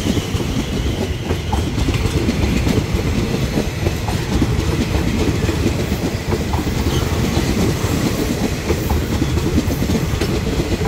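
Thai railway passenger coaches rolling past close by: a steady, loud rumble of steel wheels on rail, with occasional clicks as the wheels pass over rail joints.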